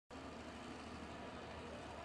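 Faint, steady background noise with a low hum and no distinct events: outdoor ambience.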